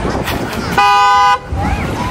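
A vehicle horn giving one steady honk of about half a second, a two-note chord, a little under a second in, over crowd chatter.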